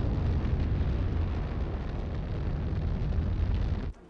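Sound effect of the Galileo spacecraft plunging into Jupiter's atmosphere: a loud, steady, deep rumbling rush that cuts off abruptly near the end.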